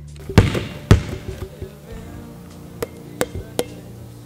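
A basketball bounced twice on a gym floor with two loud thuds, then several lighter taps and sharp clicks, over quiet background music.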